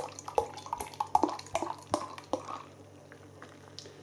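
Ale glugging out of a glass bottle into a pint glass, a quick run of gurgles and splashes that thins out after about two and a half seconds as the glass fills and the bottle empties.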